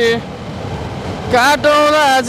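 A song with a singer's voice in long held notes. A note ends right at the start, and after a gap of about a second filled only by a low steady rumble, the singing comes back in.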